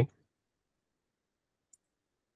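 Near silence on a video-call line, with one faint, short high click near the end.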